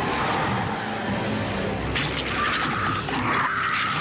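Noisy intro sample at the head of a goregrind track: a dense jumble of unpitched sound effects with a few sharp clicks and no steady beat, well below the level of the band.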